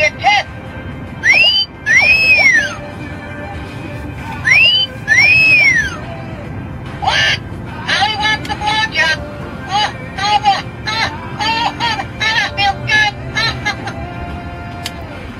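Motion-activated talking parrot toy sounding off through its small speaker: two long whistles that rise and fall, then from about halfway a fast run of high, squeaky chatter in its parrot voice.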